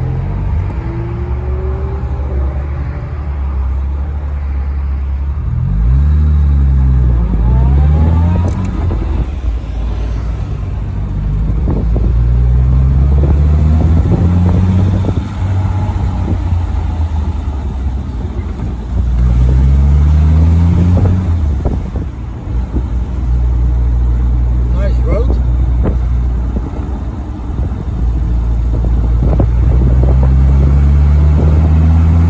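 1961 Jaguar E-Type's 3.8-litre straight-six engine pulling the car along under acceleration, its pitch climbing about four times and falling back in between as it is shifted up through the gears.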